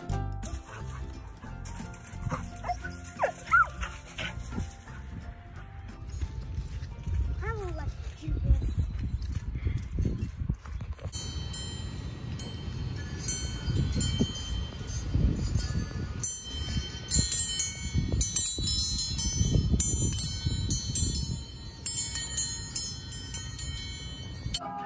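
Homemade wind chime of hanging metal spoons and forks tinkling and clinking in the wind, many scattered high rings from about halfway on. Wind rumbles on the microphone throughout.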